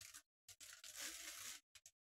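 Clear plastic bag crinkling and rustling as it is pulled off a deck box: a couple of short rustles, a longer one lasting about a second in the middle, and a last brief crinkle near the end.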